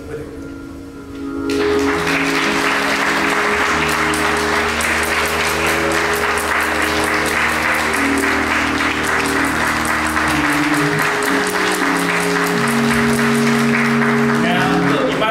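Congregation applauding over held, sustained chords from the church band's instrument, which shift from chord to chord; the clapping starts about a second and a half in and carries on steadily.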